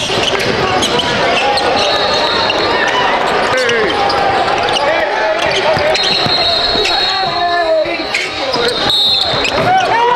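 Live basketball game sound in a gym: a ball bouncing on the hardwood and sneakers squeaking, with players' and spectators' voices.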